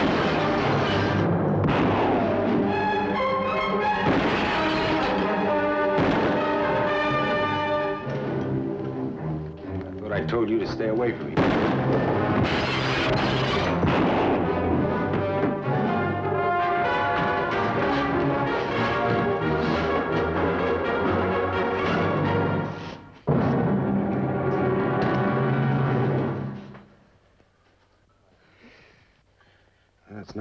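Dramatic orchestral film score with brass and timpani, cut through by a few sharp gunshots. The music stops about three and a half seconds before the end, leaving near silence.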